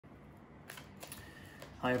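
A tarot deck being shuffled by hand, giving a few faint card clicks.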